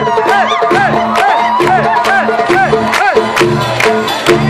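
Live band playing an upbeat Arabic pop instrumental passage: a drum beat of about four hits a second over pulsing bass, with a melody of quick rising-and-falling notes. Crowd noise runs under the music.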